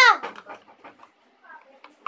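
A child's loud, high-pitched call of "Kuya!" ends about a quarter second in. Faint clicks and light knocks of a plastic tub being handled and stirred follow, with soft voices in the background.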